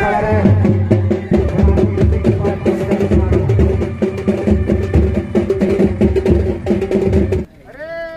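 Music with a heavy, rhythmic bass beat, cutting off suddenly about seven seconds in.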